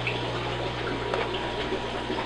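Steady running-water noise from aquarium tanks and pumps, with a constant low hum underneath.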